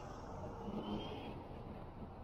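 Street traffic background: a steady low hum and rumble of car engines and tyres.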